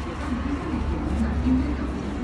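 Dry tissue paper crunching as it is pressed and dabbed against a face, over a steady low hum and faint background voices.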